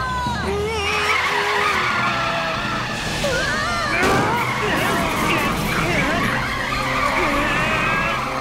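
Cartoon sound effect of a vehicle's tyres screeching in a long skid as it brakes hard to avoid children running across the road. Children's cries are mixed in over it.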